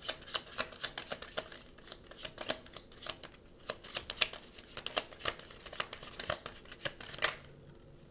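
A deck of oracle cards being shuffled by hand: a quick, uneven run of soft card clicks and snaps that stops about seven seconds in.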